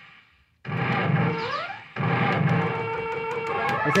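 Electronic music from a '5-6-7 Bola' coin-operated pinball gambling machine. It cuts in after a brief hush about half a second in, has a rising slide partway through, and restarts at about two seconds with steady held notes.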